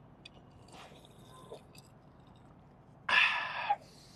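A person sipping water from a glass, then, about three seconds in, a loud breathy "ahh" exhale lasting under a second after the drink.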